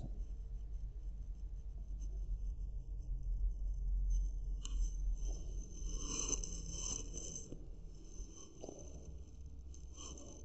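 Faint scratching and rubbing of a pen on a notebook page and the paper being handled at a desk, busier for a few seconds in the middle, over a steady low hum.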